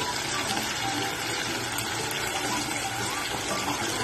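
Hot oil sizzling steadily as spice-coated pieces deep-fry in a pot.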